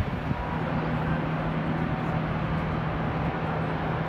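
A steady low mechanical hum over even outdoor background noise.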